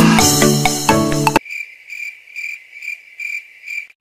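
Upbeat electronic background music cuts off abruptly about a second and a half in. It gives way to a cricket-chirping sound effect, even chirps about twice a second in the silence: the classic 'crickets' cue for an awkward wait.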